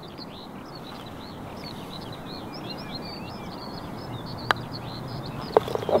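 Birds chirping continuously over a low rumble of wind. About four and a half seconds in comes a single sharp click of a putter striking a golf ball. About a second later a few quick clicks follow as the ball drops into the cup.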